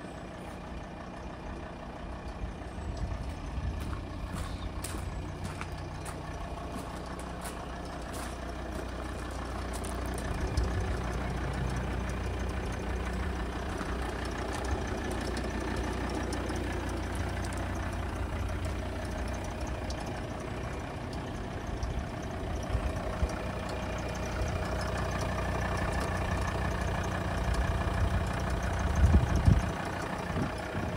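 A vehicle engine idling steadily, with a few faint clicks and a louder knock near the end.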